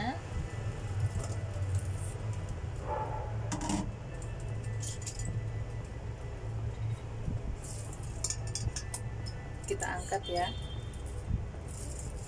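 Glass steamer lid and stainless steel steamer pot clinking and knocking in scattered short clicks as the lid is lifted off and the plate of steamed egg is handled, over a steady low hum.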